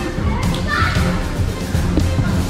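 Children shouting and playing over music with a heavy bass line, with one louder shout about half a second in.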